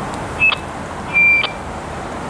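Two short high electronic beeps, the second longer and louder, over a steady hum of street traffic.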